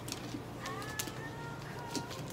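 Toy poodle whimpering: thin, high whining tones that rise slightly, starting about half a second in, with a few light clicks.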